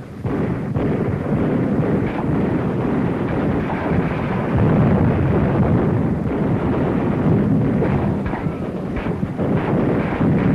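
Artillery barrage on a 1940s film soundtrack: a continuous rumbling din of shellfire and explosions with scattered sharper blasts, growing louder about four and a half seconds in.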